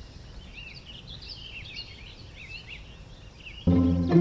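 Small songbirds chirping and twittering in quick short calls over faint low background noise. Soft music with sustained tones comes back in abruptly near the end.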